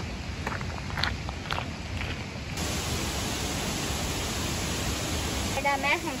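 Outdoor ambience of steadily rushing water, which steps up louder and brighter a little under halfway through. Light ticks come about twice a second before that, and a voice is heard briefly near the end.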